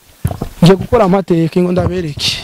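Speech only: a man talking rapidly.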